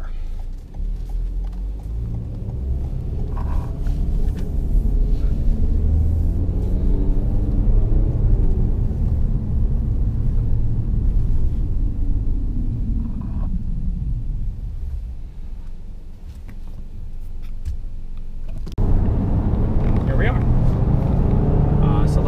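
Toyota Corolla heard from inside the cabin on the move: engine and road noise climb in pitch as the car accelerates, then ease off. Near the end the noise jumps abruptly to a louder, steadier highway road rumble.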